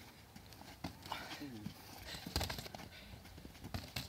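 Boxing gloves thudding on bodies and feet scuffling on dry grass as two people spar and then clinch, heard as a few scattered knocks with the biggest cluster about two and a half seconds in.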